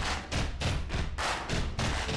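Intro music built from a rapid, even run of hard percussive hits, about three or four a second, over a steady low bass.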